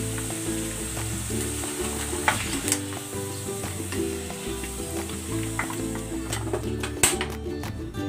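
Batter-coated chicken pieces sizzling steadily in hot deep oil as they are lifted out with a wire skimmer, with a few sharp clicks of the metal skimmer against the wok. The sizzle thins out near the end.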